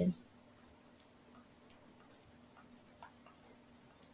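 Near silence with a few faint, scattered ticks of a stylus tapping as handwriting is written on a tablet screen.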